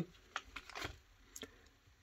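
A few faint clicks and rustles from a foil-lined sweet wrapper being handled and put down on a cork coaster.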